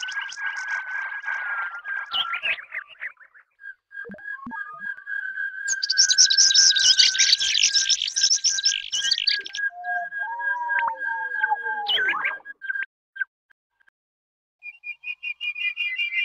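Sparse experimental electronic music made of whistle-like and bird-like synthetic sounds. A steady high tone runs under a loud burst of rapid chirps from about six to nine seconds in. A falling glide follows, then a brief silence before chirping tones come back near the end.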